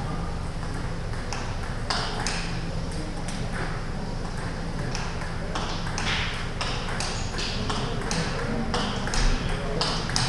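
Table tennis balls clicking off bats and tables in irregular strings of sharp ticks, echoing in a large sports hall.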